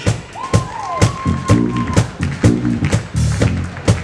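Electric bass guitar playing a funky solo line over a steady drum-kit beat, a bass feature after the bassist is introduced. A high held note slides near the start.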